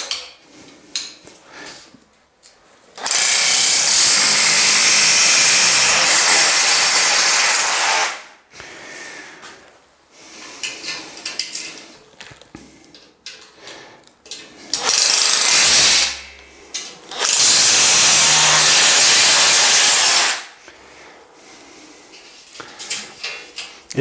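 Cordless drill boring into pumice-block masonry through a metal drywall profile for wall plugs: one long run of about five seconds, then a short one and a second run of about three seconds, with clicks and handling noises in between.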